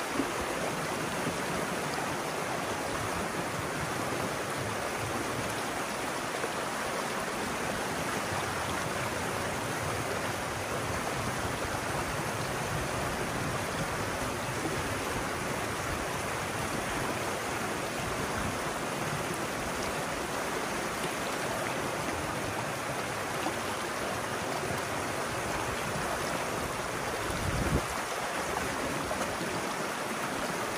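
Pond water pouring steadily through a breach cut in a beaver dam, a fast, churning rush down the narrow channel as the pond drains. A brief low thump near the end.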